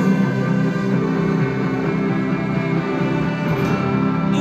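A rock band playing live in an arena, heard from the stands: a steady instrumental passage of sustained chords with guitar.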